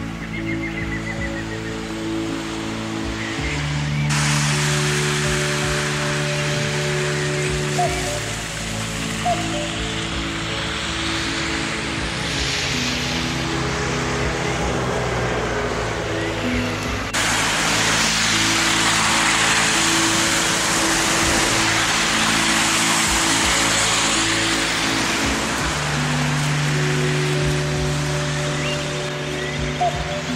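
Background music of slow, held chords, with a steady hiss-like layer that comes in suddenly about four seconds in and grows brighter past the middle.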